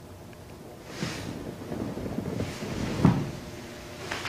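Clothing and sofa upholstery rustling as a person shifts and gets up from a sofa, with a soft thump about three seconds in.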